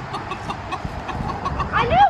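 Hens clucking in short, rapidly repeated notes while pecking at scattered chicken scratch, with a louder rising call near the end.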